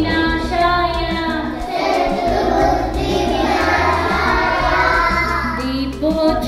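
A group of young children singing a prayer together in unison.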